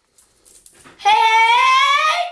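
A boy's long, drawn-out shout of "Hey", held on one note that rises slightly, starting about a second in after a moment of near quiet.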